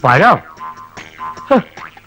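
A man's voice making sing-song vocal sounds that swoop sharply up and down in pitch: a loud swoop at the start and a shorter one about one and a half seconds in.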